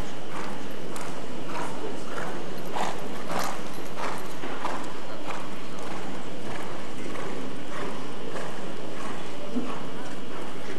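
Hoofbeats of a Lipizzaner stallion moving over the sand floor of an indoor riding hall, a regular beat of nearly two strikes a second over a steady background hiss.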